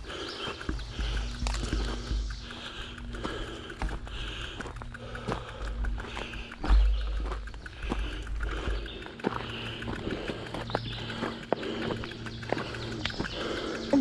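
Mountain bike riding over a bumpy dirt trail, with frequent clicks, clacks and rattles from the bike over roots and rough ground and a louder knock about seven seconds in. Bursts of low rumble come and go on the camera's microphone.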